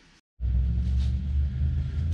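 A brief dropout to silence, then a steady low machine hum that starts abruptly.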